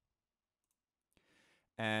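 Silence, then about a second in a single faint computer-mouse click and a brief soft breath-like hiss, before a man starts speaking near the end.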